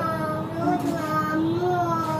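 A young child's voice singing a wordless tune in drawn-out, gently wavering notes.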